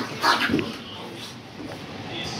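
A small dog whimpering briefly just after the start, then only a low steady background.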